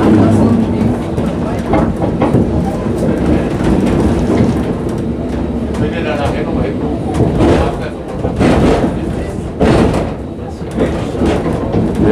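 Inside a historic wooden tram car running along the track: a steady rumble of steel wheels on the rails with rattling from the car body, and a few louder knocks in the second half.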